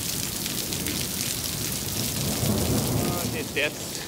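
Steady downpour of thunderstorm rain on a wet paved yard, with a low rumble of thunder swelling about two to three seconds in.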